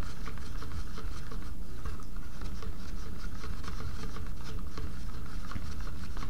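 A stirring stick scraping and ticking against the inside of a small mixing cup as two-part polyurethane resin is stirred, a quick irregular run of light scrapes and clicks. The resin is being worked to bring out bubbles before pouring.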